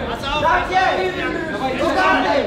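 Several voices talking and shouting over one another: cornermen and spectators calling out to the fighters.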